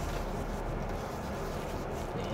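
Steady, even cabin noise of a Kia K5 moving slowly, heard from inside the car: low engine and tyre hum.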